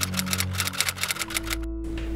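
Typewriter keystroke sound effect, a rapid run of clicks that stops near the end, over background music.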